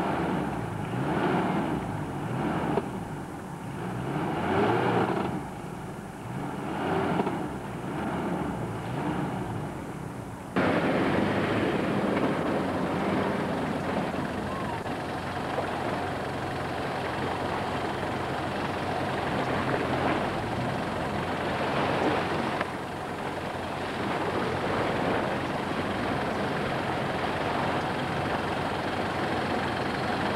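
First-generation Mitsubishi Pajero engine heard from outside the vehicle. For the first ten seconds it revs in repeated swells about every second and a half. After an abrupt cut it runs steadily and loudly as the Pajero drives over sand.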